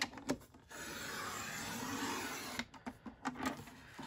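Sliding paper trimmer cutting a strip off a sheet of patterned paper: a steady scraping hiss of about two seconds as the blade head runs down the rail, with a few clicks before and after it.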